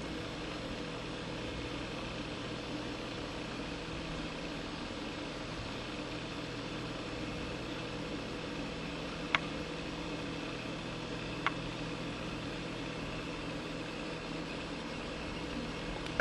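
Steady low hiss with a faint hum, room tone with no speech, broken only by two faint clicks, one about nine seconds in and one about eleven and a half seconds in.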